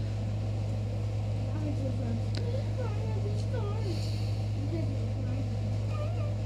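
A steady low hum, with a faint voice in the background and a few light clicks.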